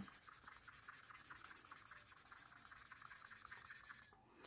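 Acrylic paint marker's hard replacement nib rubbing back and forth on notebook paper: faint, quick, even scribbling strokes. The marker is being worked to get its ink flowing, because it has been laying down almost colourless ink.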